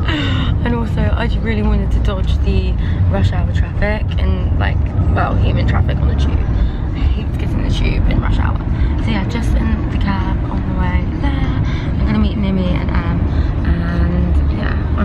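A woman talking inside a moving car's cabin, over the car's steady low road rumble.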